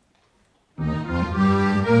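An accordion orchestra starts playing suddenly about a second in, out of near silence: many accordions sounding together in full, held chords.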